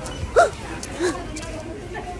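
Two short, high vocal yelps from a person: a loud one about half a second in and a softer one about a second in.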